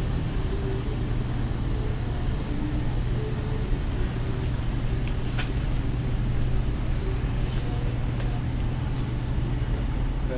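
A steady low rumble with a faint haze of noise, broken once by a single sharp click about five seconds in.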